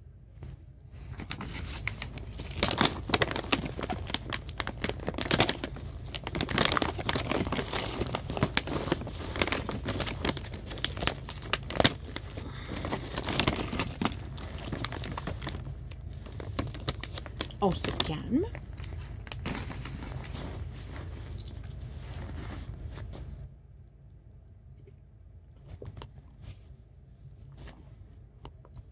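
Plastic dog-treat bag crinkling and rustling as it is handled and rummaged through, with many sharp crackles, for about twenty seconds before it stops.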